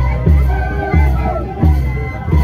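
Ayacucho rural carnival music: a drum beating steadily about three times every two seconds under a melody, with crowd voices.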